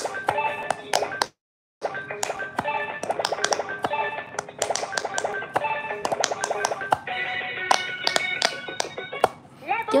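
Electronic quick-push pop-it game toy playing its beeping tune and sound effects while its buttons are pressed in quick succession, the presses heard as many sharp clicks. The sound cuts out completely for about half a second, just over a second in.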